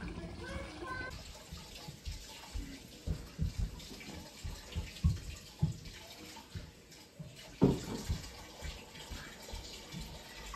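Water running from a kitchen tap into a sink, with low knocks from things being handled in it and one louder knock about three-quarters of the way through.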